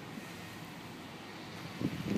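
Power liftgate of a 2013 Lexus RX 350 rising under its electric motor, a faint steady hum mixed with outdoor wind noise on the microphone.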